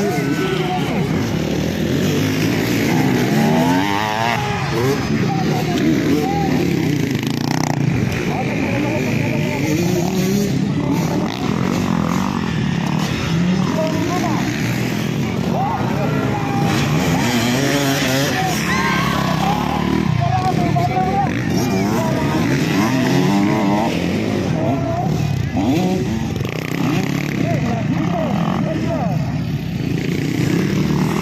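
Motocross dirt bike engines revving up and down over and over as the bikes race over the jumps of a dirt track, with people's voices mixed in throughout.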